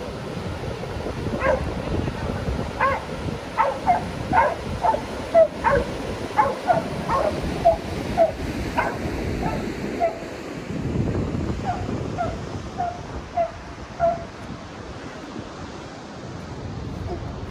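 A dog barking repeatedly, short high barks about two a second, with a brief pause midway, until it stops near the end; waves breaking and wind on the microphone go on underneath.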